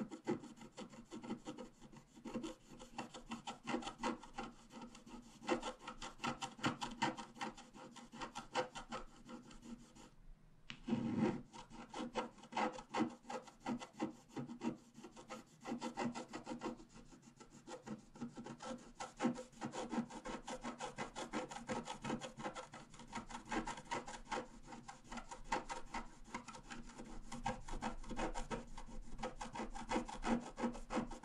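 Pointed wooden stylus scratching the black coating off a scratch-art card in quick, short, repeated strokes, with a brief pause about ten seconds in.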